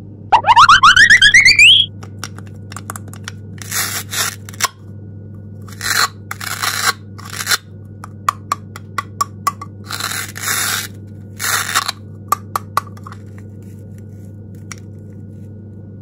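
A rising whistle-like sound effect, then plastic clicks and several short scraping, tearing noises as the two halves of a plastic toy watermelon are handled and pulled apart.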